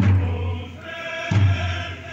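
A slow, deep drum beat marks a funeral pace, one stroke at the start and another about a second and a half later. Between the strokes a choir of voices sings a slow chant.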